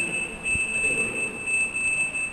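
Steady high-pitched electronic whine from the microphone and sound system, a single held tone with a fainter, higher tone above it. A single low thump comes about half a second in.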